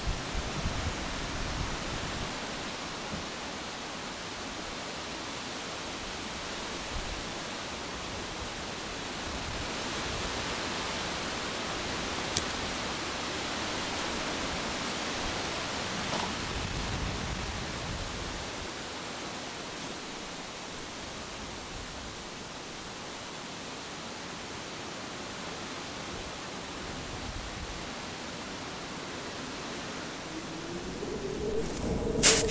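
A steady, even hiss of outdoor background noise that swells slightly in the middle, with faint low rumbling at the start. A single faint tick comes about twelve seconds in.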